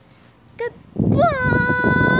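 A child's voice: a short high squeak, then a loud, long high note held steady, over low rumbling noise from the camera swinging about.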